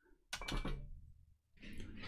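Short knock and rattle of the opened laptop's plastic chassis being handled on the bench, about a third of a second in, followed by a brief rustle near the end.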